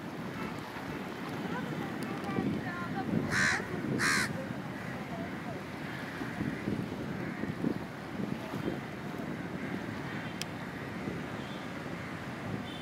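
A crow cawing twice in quick succession, about three and a half seconds in, over a steady murmur of voices and waterside noise.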